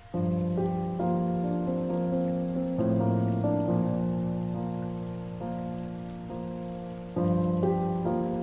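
Solo piano playing a slow, gentle arrangement of a K-pop ballad: sustained chords under a melody. A new phrase comes in just after the start, with fresh chords about three seconds in and again near the end, each slowly dying away.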